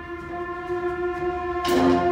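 Concert wind band holding a sustained brass chord, then a sharp accented attack near the end as the band strikes a new chord.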